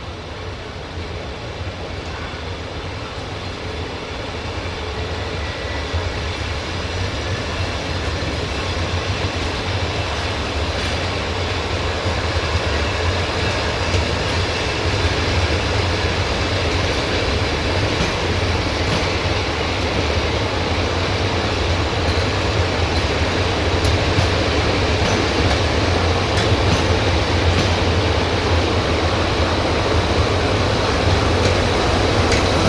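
Passenger coaches rolling slowly along the rails during shunting, moved by a CFR 060-DA (LDE2100) diesel-electric locomotive whose Sulzer diesel engine runs with a steady low drone. The sound grows steadily louder as the train comes closer.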